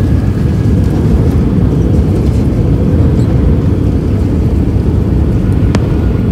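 Cabin noise of an Airbus A319 rolling out on the runway just after touchdown: a loud, steady, deep rumble from the landing gear on the runway and the engines, with one short click near the end.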